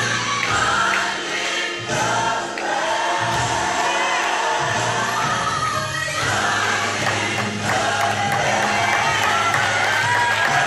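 Gospel music with choir singing over a steady bass line.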